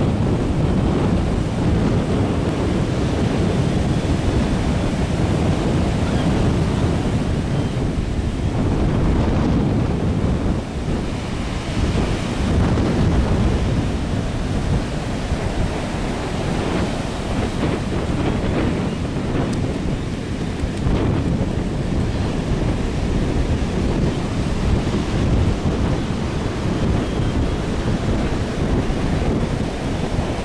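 Heavy ocean surf breaking and washing up a sandy beach in a steady roar, with wind buffeting the microphone.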